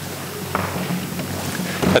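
Steady low hum of room noise in a hall, with faint shuffling and knocks as people walk about.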